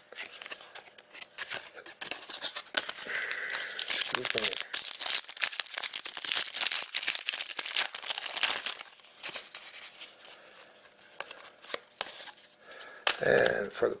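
A plastic trading-card pack wrapper being torn open and crinkled, with dense crackling and rustling for several seconds. It then gives way to quieter handling of the cards.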